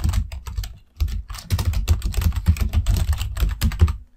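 Fast typing on a computer keyboard: a dense run of keystrokes, each with a dull thud, with a short pause about a second in.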